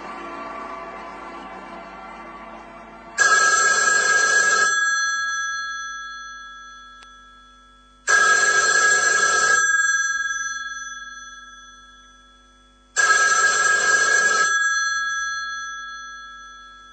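Telephone bell ringing three times, evenly spaced about five seconds apart. Each ring lasts about a second and a half and then fades away slowly. Before the first ring a faint sound dies away.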